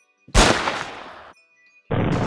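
A gunshot about a third of a second in, sharp at the start and dying away over about a second, followed near the end by a second loud burst.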